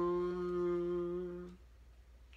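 A man singing unaccompanied, holding one long note through closed lips as a hum on the nasal end of a word, which stops about one and a half seconds in.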